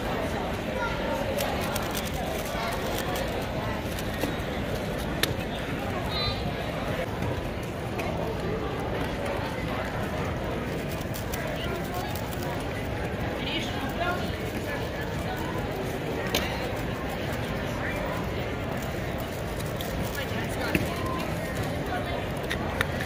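Indistinct chatter of many people in a large hall, steady throughout, with a few sharp clicks.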